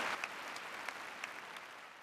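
Arena audience applauding, individual claps audible in the steady clapping, the whole fading out steadily.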